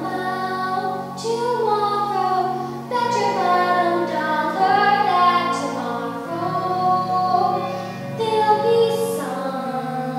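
A young girl singing solo, her voice holding and sliding between notes, over low sustained accompaniment chords that change every few seconds.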